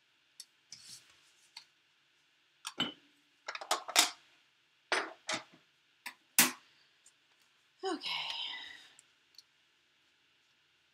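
Hard plastic cutting plates and a thin metal die clicking and clacking as a die-cut sandwich is taken out of a small manual die-cutting machine and the parts are set down: a string of sharp separate clicks, several close together in the middle.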